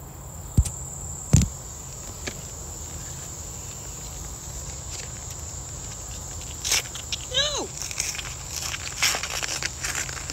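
A Priority Mail envelope being torn open by hand, its paper crackling and ripping in a string of short tears from about seven seconds in. Two knocks come near the start. A steady high insect drone runs underneath, and a short falling vocal sound comes in the middle of the tearing.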